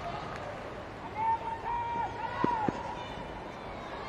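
Football stadium ambience during open play: a steady crowd murmur, with a shout carrying across the pitch from about a second in for a second and a half, and two short dull knocks near the middle.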